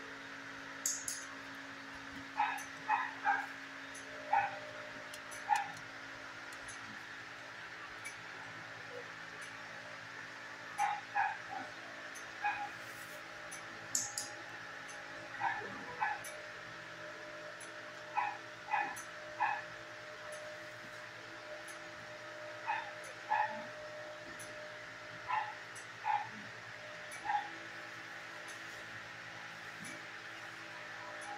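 A dog barking in short, high yips, in groups of two or three every couple of seconds, over a steady low hum.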